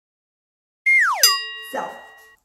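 Edited-in sound effect: a quick downward-sliding whistle tone followed at once by a bright bell-like ding that rings on and fades, about a second in after dead silence.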